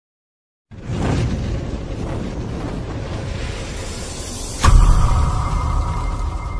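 Cinematic logo-intro sound effect: after a moment of silence, a loud rushing swell with a deep rumble, then a sharp impact with a deep boom a little before the end, leaving a steady ringing tone.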